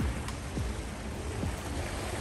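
Small waves washing on a pebble shore, an even hiss of water with a steady low rumble underneath.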